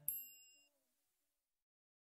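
A faint bell-like ding right at the start, fading within about half a second. Then silence in the gap between two songs.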